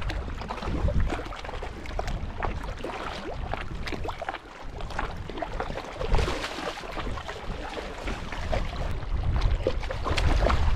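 Water splashing and sloshing in the shallows as a hooked tailor thrashes at the surface, with a louder splash about six seconds in. Wind rumbles on the microphone throughout.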